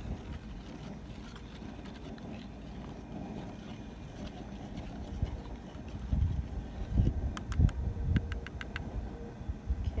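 A plastic spoon stirring dye powder into water in a bowl, with a quick run of light clicks about seven seconds in, over a steady low rumble with a few louder low thumps.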